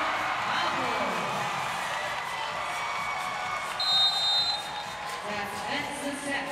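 Large arena crowd cheering and shouting together after the set-winning point of a volleyball match, with a short high whistle about four seconds in.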